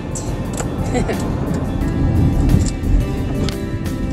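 Background music playing over the low rumble of a car driving, heard from inside the cabin.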